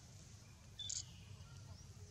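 A single short, high-pitched animal squeak about a second in, over faint steady outdoor background.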